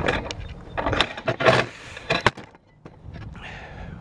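Several knocks and rustles from a handheld camera being swung around and handled.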